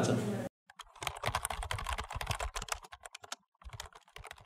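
Computer-keyboard typing sound effect: a quick run of key clicks, a short pause, then a few more clicks near the end.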